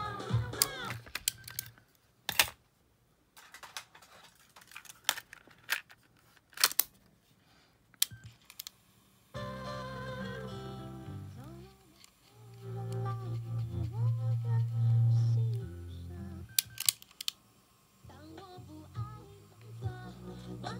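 Sharp plastic clicks and taps as the opened Walkman's case is handled, over a gap in the sound. About nine seconds in, cassette playback from the Sony Walkman EX610 resumes: a song with a strong bass line, the tape played over a freshly cleaned head.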